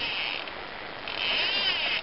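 Fishing reel buzzing as a hooked fish runs and pulls line off the spool, the pitch rising and falling with the speed of the run. It is brief at the start and comes back louder about a second in.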